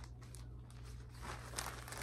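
Faint rustling and crinkling of a garment and its wrapping being handled, with small irregular clicks, over a steady low hum.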